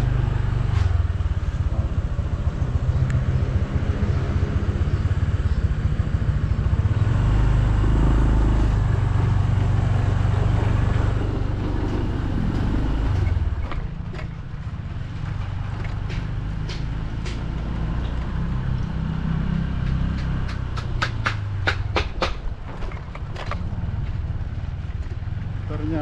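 Motorcycle engine running steadily while riding along a rough village path, louder in the first half and dropping somewhat about halfway through. Near the end a quick run of sharp clicks or rattles.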